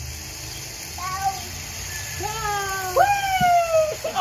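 High-pitched voices calling out in long drawn-out cries that fall in pitch. A short one comes about a second in, then several overlap through the second half, over a steady low rumble.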